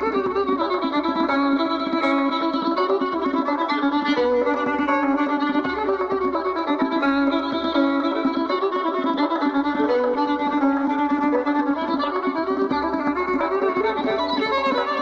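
Violin playing a Persian classical melody in dastgah Mahour, with a plucked string instrument sounding alongside, in a continuous run of sustained notes.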